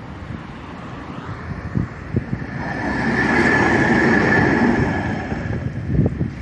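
Tatra T3M tram approaching along the track, its running noise growing to a peak between about three and five seconds in, with a high steady whine at its loudest.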